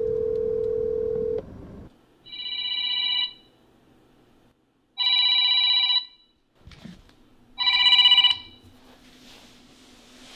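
A phone call being placed: one steady call tone for about a second and a half, then a smartphone ringtone for the incoming call, sounding three times, each ring about a second long.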